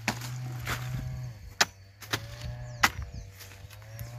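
A machete chopping into a banana plant's soft, watery stem: about five sharp strikes spread over a few seconds.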